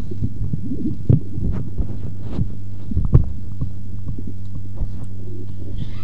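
A microphone on a public-address system being handled and passed from hand to hand, giving irregular low bumps and knocks, the strongest about one second and three seconds in, over a steady electrical hum from the sound system.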